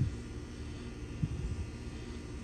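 Steady low rumble with a faint engine-like hum, like distant motor traffic.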